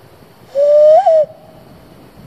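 A single hoot blown through cupped hands, beginning about half a second in and lasting under a second; the pitch rises gently, jumps up briefly and then drops away as it ends.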